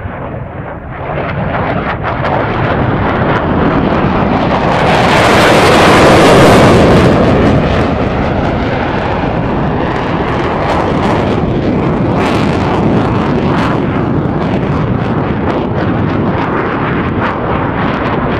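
A loud rushing roar that swells to a peak about six seconds in, then holds steady with scattered crackles.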